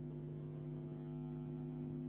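Steady electrical hum made of several constant low tones, unchanging throughout.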